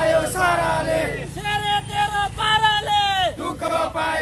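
A group of men chanting protest slogans in unison, in short shouted phrases repeated one after another, each ending with the pitch falling.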